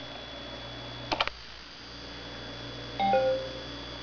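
A computer keyboard key clicks twice about a second in as Enter is pressed. Near the end a computer chime sounds: two short pitched notes, the second lower. It fits the PC's USB device sound as the connected iPhone changes mode.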